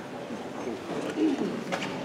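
Low murmur of voices in the concert hall, with a short wavering vocal sound about a second in.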